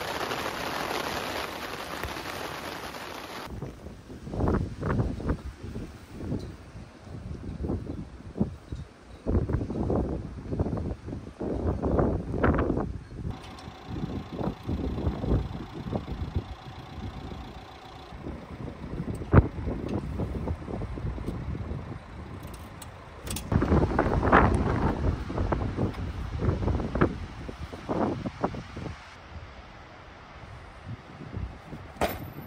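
Steady rain hiss for the first few seconds, then gusty wind buffeting the microphone in irregular bursts, strongest about three-quarters of the way through, with a single sharp knock in the middle.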